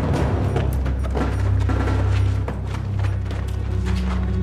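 Tense dramatic soundtrack music: a low, sustained bass drone under a series of sharp percussive hits.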